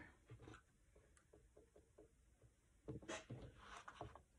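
Faint light scratching and rustling of paper being handled as a needle and waxed thread are worked through the punched holes of a journal signature, with a slightly louder rustle about three seconds in.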